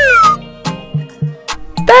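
Children's background music with a steady beat. A loud high tone sliding down in pitch dies away just after the start, and a voice begins saying "thirteen" near the end.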